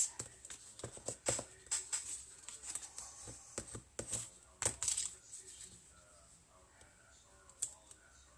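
Bone folder rubbing and pressing along a cardstock strip on a paper-covered table, a run of short paper scrapes and rustles through the first five seconds, then quieter. It is firmly pressing strips laid over double-sided tape.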